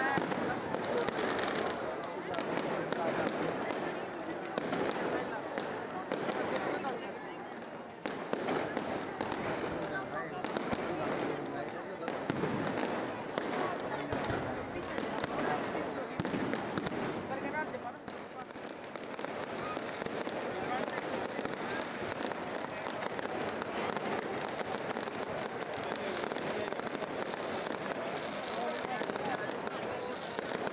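Aerial fireworks going off overhead in a rapid series of pops and crackles, over the continuous chatter of a large crowd.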